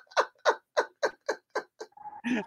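A person laughing: a run of short 'ha' bursts, about four a second, growing softer toward the end.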